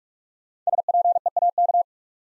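Morse code tone sending the word SPEAK at 45 words per minute: a single steady-pitched beep keyed rapidly on and off in dots and dashes for just over a second, starting a little over half a second in. This is the repeat sending of the word just spoken.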